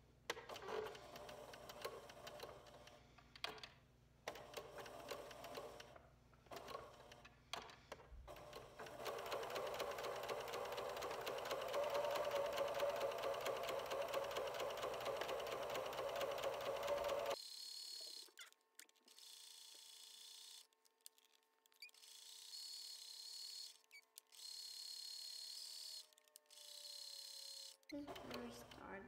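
Pfaff electric sewing machine sewing a straight stitch through felt, running in short bursts with pauses as the fabric is guided, with one longer steady run of several seconds around the middle.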